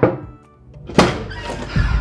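Two heavy knocks on a door, about a second apart, each with a short ringing tail. Background music with a steady beat comes in near the end.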